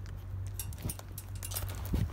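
A Jersey calf nibbling and chewing calf starter pellets: scattered soft crunches and clicks over a steady low hum.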